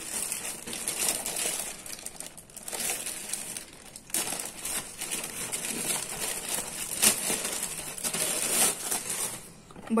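Thin clear plastic bag crinkling and rustling on and off as it is pulled off a plastic food cover, with a few sharper crackles.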